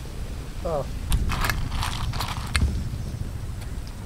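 Clam shells clattering and clinking against each other in a metal cooking pot, in a couple of short rattling runs over about a second and a half, with a brief snatch of a man's voice just before.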